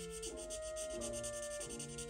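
Felt-tip marker rubbing on paper in quick repeated back-and-forth strokes as it colours in, over background music with a slow melody of held notes.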